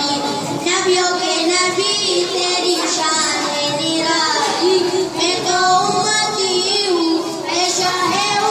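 Schoolboys singing a song into a microphone, a child's voice holding long, slightly wavering notes.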